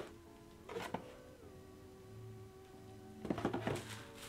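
Bubble wrap crinkling in two short bursts, about a second in and near the end, as it is pulled off a boxed teapot. Soft background music with long held notes plays throughout.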